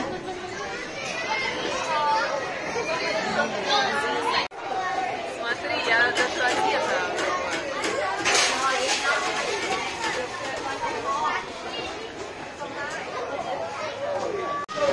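Indistinct chatter of several voices at once, no clear words, dropping out for an instant a little over four seconds in.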